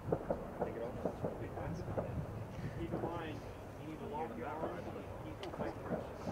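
Indistinct voices talking over a low outdoor rumble, with one short click near the end.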